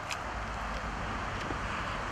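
Road traffic going by, a steady hiss over a low rumble.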